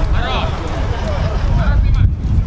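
Players' voices calling out on an outdoor football pitch, over a heavy low wind rumble on the microphone.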